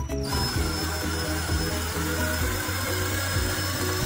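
A power drill starts up about a quarter-second in and runs steadily with a thin high whine, spinning the frame basket of a homemade honey extractor, over background music.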